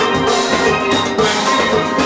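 A steel orchestra playing: many steel pans carrying melody and harmony over a steady drum-kit beat.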